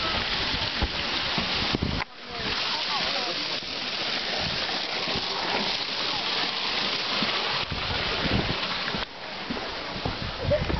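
A steady hiss with faint voices of other people in the background. The hiss drops out suddenly about two seconds in and again near the end.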